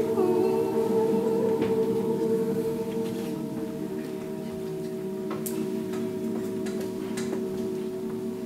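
A large group of untrained voices holding long wordless notes together, several pitches overlapping in a sustained drone that grows a little quieter after about three seconds.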